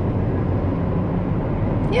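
Steady low rumble of a car's engine and tyres heard from inside the cabin while driving. A voice starts right at the end.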